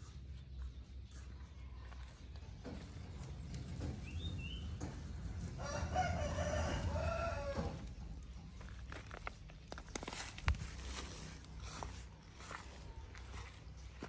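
A rooster crowing once, a single call of about two seconds midway through, over faint outdoor background. A sharp click comes a few seconds later.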